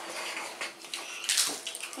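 Pringles potato crisps being chewed and a hand rummaging among the crisps in the cardboard tube, a dry crunching and rustling with one sharper crunch about one and a half seconds in.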